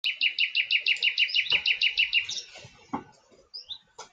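Bird-like chirping: a fast, even run of about fifteen identical high chirps, some seven a second, lasting about two seconds, then a few fainter scattered chirps and a couple of soft knocks.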